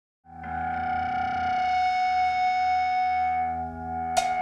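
A held, droning musical chord of several steady tones from the band's instruments. It swells in just after the start and dies down near the end.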